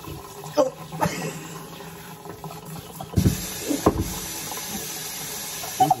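Kitchen sink faucet running, its water splashing onto hair being rinsed, as a steady rush that gets brighter about three seconds in. A few short bursts of voice sound over it.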